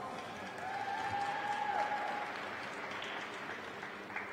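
Audience applauding in an ice arena, the clapping slowly fading, with a faint held tone about a second in.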